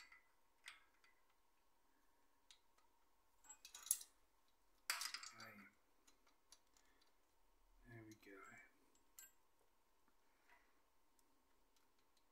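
Faint clinks and rattles of a metal timing chain being handled and worked onto the crankshaft sprocket of a Nissan VQ35DE V6, with two louder jangles about four and five seconds in.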